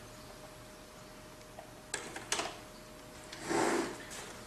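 Two light clicks about two seconds in, a quarter-second apart, from the plastic hatch parts of a 1/16 scale model tank being handled, over a faint steady tone; a short rustle near the end.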